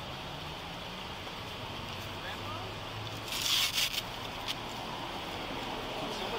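Steady outdoor background with a low hum, and a brief burst of rustling close to the body camera's microphone about three and a half seconds in.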